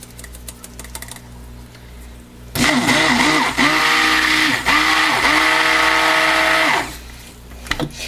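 Stick blender mixing soap batter in a plastic jug, starting about two and a half seconds in and running loudly for about four seconds before stopping; its whine dips in pitch briefly a few times as the motor is pulsed or takes the load. This is the blend after the cream goes into the oils and lye solution, to bring the batter together.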